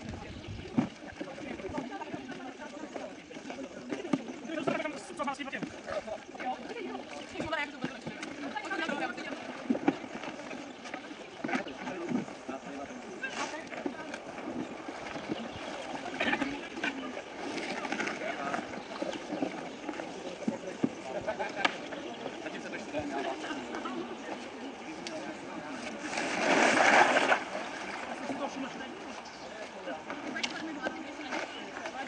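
Many voices talking at once, a general background chatter with no clear words, with a few short knocks and a louder burst of sound lasting about a second near the end.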